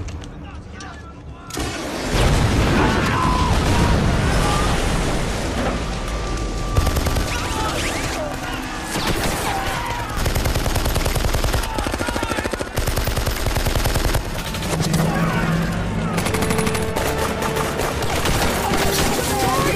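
Battle gunfire: a quiet opening, then about one and a half seconds in a loud, sustained volley of rifle and machine-gun fire in rapid bursts, with men shouting.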